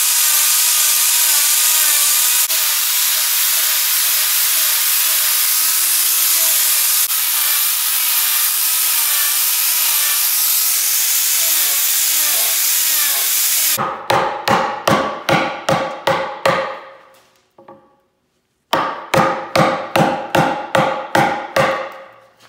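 Angle grinder shaving an ash log for about fourteen seconds, its whine wavering as the disc bites into the wood. Then two runs of quick hammer blows, about three or four a second with a short ring each, drive a chisel into a round mortise in the log.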